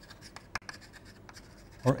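Chalk scratching and tapping on a blackboard as a word is written in a run of short strokes, with one sharper tap about halfway through.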